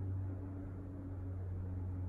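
Steady low hum with faint higher overtones over a light background hiss.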